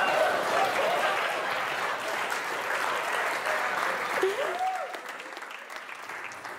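Audience applauding, with scattered voices in the crowd; the applause dies down over the last couple of seconds.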